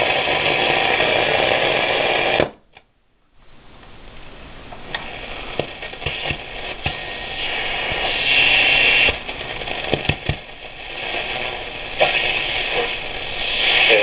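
A 1938 Airline 62-1100 tube console radio on its shortwave band, its speaker giving out static and crackle while the dial is turned through a quiet stretch of the band. The sound cuts out almost completely for about a second, two and a half seconds in. It then comes back as hiss and crackle with scattered clicks and a few louder swells.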